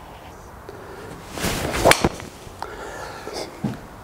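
Callaway Rogue Sub-Zero driver swung into a teed golf ball: a short whoosh of the swing builds into a sharp crack of impact about two seconds in. It is a good solid strike.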